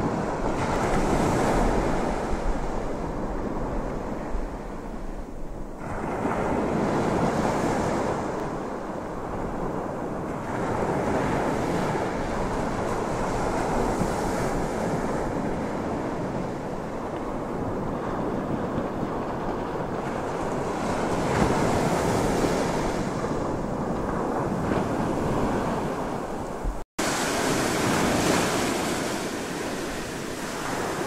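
Ocean surf washing in and out, swelling and easing every few seconds, with wind buffeting the microphone. The sound cuts out for a moment near the end.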